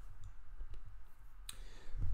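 Handling noise from a handheld microphone being picked up: low bumps and a few small clicks, the sharpest about one and a half seconds in.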